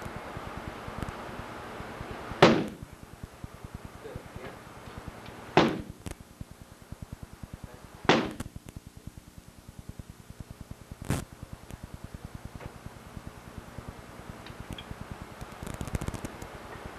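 Four hard strikes landing on a padded hand-held striking shield, one every two to three seconds, each a sharp smack.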